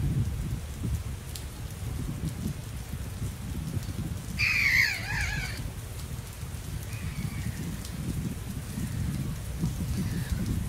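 Outdoor lakeside ambience: a low, uneven rumble of wind and lapping water. A harsh, falling bird call comes about four and a half seconds in, and a fainter one near seven seconds.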